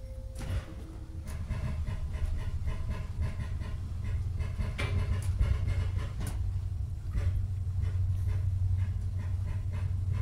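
Interior of a Mark 3 coach as a Class 43-hauled HST pulls away from a station and gathers speed. The low rumble of the diesel power cars and the running gear builds steadily, with a few sharp clunks from the track and coach. A short steady electronic tone dies away in the first second.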